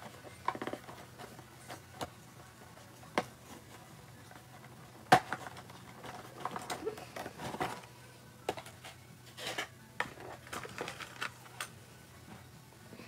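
Quiet handling noises close to the microphone as hands plait long hair: soft rustles and scattered sharp clicks, the loudest about five seconds in.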